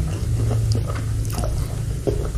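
Close-miked chewing of a mouthful of seblak, spicy noodles, with irregular small clicks and crackles as the food is worked in the mouth.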